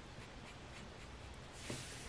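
Faint scratching of a Sharpie permanent marker drawing quick short lines on cardstock, with a slightly louder brushing stroke near the end.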